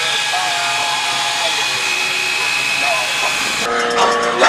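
A steady, hissing sound bed with high whistle-like tones held throughout and wavering lower tones beneath, with little deep bass. It cuts off abruptly near the end, where voices come in.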